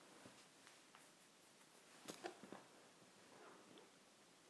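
Near silence with faint handling noises as fabric is smoothed and pinned by hand: soft rustling and a small cluster of light clicks about two seconds in.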